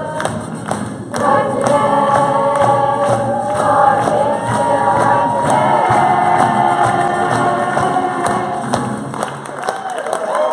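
A young stage cast singing together as a chorus over musical accompaniment, with a brief break about a second in.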